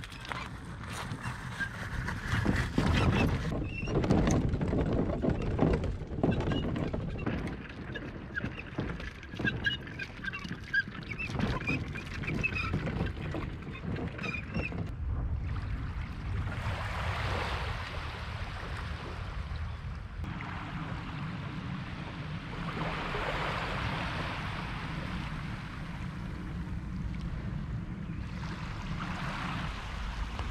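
Footsteps and kayak trolley wheels crunching over a shingle beach, with birds calling over them. About halfway through this gives way to slow, swelling washes of small waves lapping on the shore.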